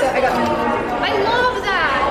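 Several people talking, their voices overlapping in conversation.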